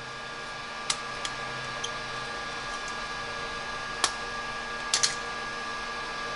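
A few sharp clicks of a car headlight projector unit's parts as it is handled and taken apart by hand, over a steady hum.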